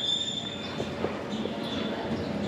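A steady high-pitched ringing tone that fades away within the first second, followed by a few faint clicks and knocks.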